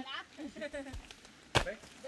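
A single sharp thud a little past halfway, typical of a jumper's feet landing hard on the dirt bank, against faint voices.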